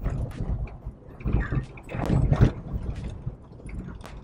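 Car driving on an unpaved sandy road, heard from inside the cabin: a low road rumble that swells and fades, with irregular knocks as the car goes over bumps.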